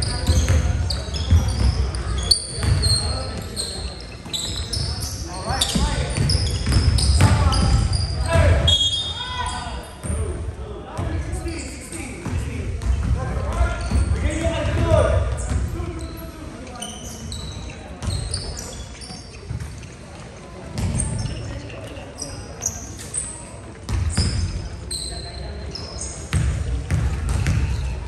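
Basketball game sounds in an echoing gym: a basketball bouncing on the hardwood floor, sneakers squeaking and players shouting.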